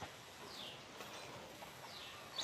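Faint outdoor background with two short, faint falling bird chirps, one about half a second in and one near the end.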